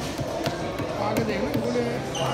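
Indistinct voices talking in the background, with a few short sharp taps.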